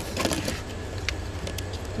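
A hard plastic storage container with a red lid being handled in a box of others: a few light clicks and knocks over a steady low hum.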